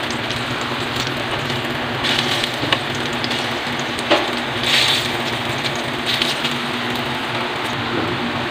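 Banana slices frying in oil in a wide metal pan: a steady sizzle that swells in short spurts as pieces are turned, with a couple of sharp clicks of metal tongs against the pan.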